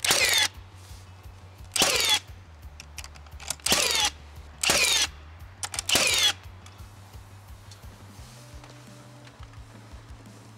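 A battery power tool runs in five short bursts of about half a second each, each with a falling whine, as spacers are fastened to the stair stringers. Faint background music plays underneath.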